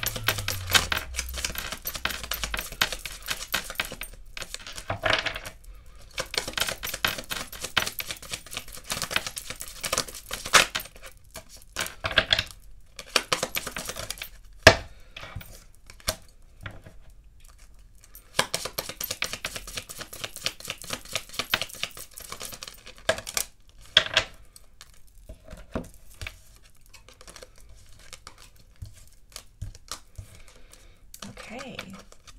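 A deck of Kipper fortune-telling cards being shuffled by hand in several spells of rapid flicking clicks, with a few single sharp taps as cards are set down on a table.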